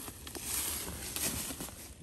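Dry leaf litter rustling and crackling as a dead whitetail buck is lifted by its antlers and shifted into an upright pose on the forest floor.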